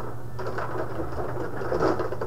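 Table-top rod hockey game in play: metal control rods sliding and spinning and the players and puck clattering on the board, busiest from about half a second in. A steady low hum runs underneath.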